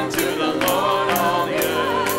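Church worship band playing a gospel chorus: a steady beat with tambourine-like strikes about twice a second over held chords, and a wavering melody line on top.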